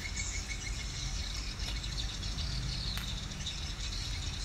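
Outdoor background: a steady, high-pitched insect drone over a low rumble.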